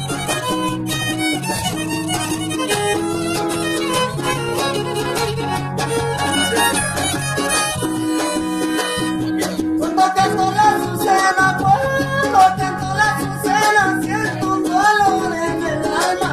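Trío huasteco playing live: a violin carries the melody over a jarana huasteca and a huapanguera strumming a steady rhythm. From about ten seconds in, the melody moves higher with a wavering, ornamented line.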